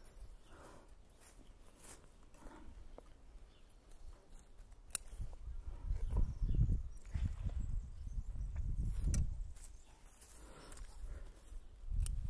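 Bonsai scissors snipping shoots from the canopy of a small Japanese maple: a few single sharp clicks of the blades, the clearest about five seconds in. From about five to nine seconds a low rumbling noise rises and falls, louder than the snips.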